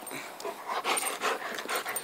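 A dog panting fast, about five or six breaths a second, out of breath from running after a thrown ball.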